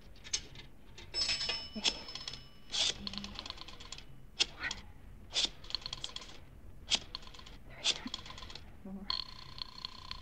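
Radio-drama sound effects of a pay-telephone call. A coin goes into the slot and a short bell chime rings about a second in, then a rotary dial clicks through several digits. A steady ringing tone starts near the end.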